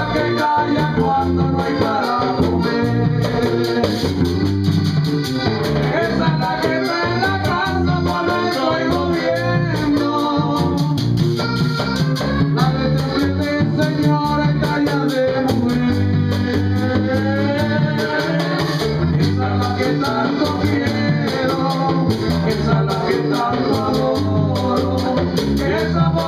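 Live vallenato music: a button accordion plays the melody over an electric bass line, with the hand-played caja drum and the scraping rhythm of a metal guacharaca.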